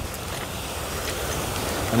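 Surf breaking and washing up over a coral-rubble and rock shoreline: a steady rush of churned-up waves.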